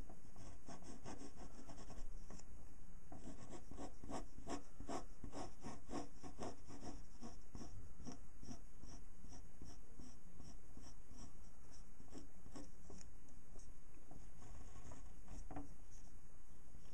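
Pen scratching on paper as a drawing is inked, in a long run of short quick strokes, about three a second, with a brief pause about two seconds in and fewer strokes near the end. A steady low hum runs underneath.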